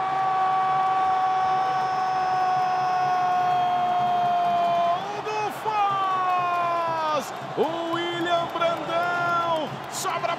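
A sports commentator's drawn-out goal cry: one long "gol" held on a steady note for about five seconds, then more long shouts that drop in pitch at their ends. A crowd cheers underneath.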